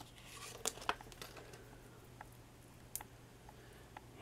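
Faint rustling and light clicks of die-cut paper butterflies being handled, their folded wings bent open by hand, with a sharper click about three seconds in. A low steady hum runs underneath.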